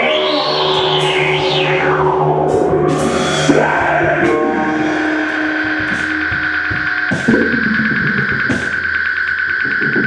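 Live experimental music on electric guitar through effects, distorted and echoing: swooping pitch glides in the first two seconds, then a long held high tone, with scattered percussion hits.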